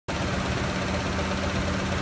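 1998 Ford F-150's 4.6-litre V8 idling steadily.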